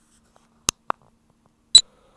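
Three short, sharp clicks, two close together about two thirds of a second in and a louder one near the end.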